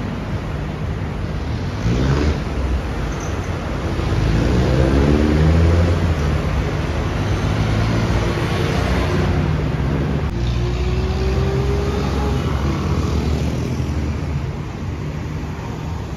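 Steady road traffic on a busy multi-lane city street: car engines and tyre noise, with engine notes sweeping in pitch as vehicles pass. The traffic is loudest about five to six seconds in.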